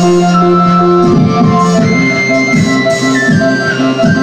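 Electronic synthesizer music: a sustained lead melody that steps up to a higher held note around the middle, over a low held note that gives way about a second in to a quick pulsing bass pattern.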